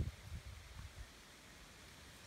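Faint outdoor background: a steady low hiss with a little low rumble and no distinct event.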